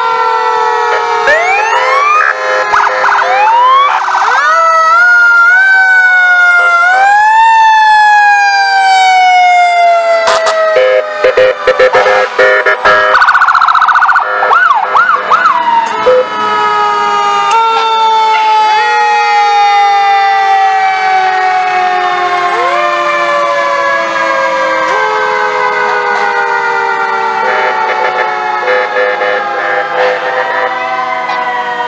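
Several fire engine sirens sounding at once, overlapping slow rising-and-falling wails with quicker yelps, a few seconds in and again about fourteen to sixteen seconds in. About ten to thirteen seconds in, a run of short, loud horn blasts cuts through.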